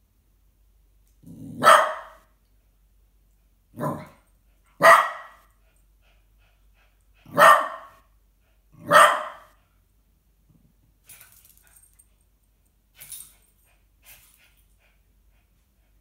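Small dog barking at another dog in play: five loud, sharp barks a second or two apart, the first starting with a low rumble, followed by a few fainter yaps.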